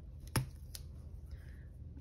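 Hands pressing a strip of washi tape down onto a paper planner page: two short, sharp taps, the first louder, then a faint rustle of the paper.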